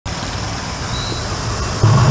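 Steady road traffic noise, with a deeper engine hum growing louder near the end.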